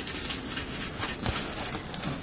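Faint rustling of thin plastic masking film being peeled by hand off a phone's display panel, with a few small handling clicks.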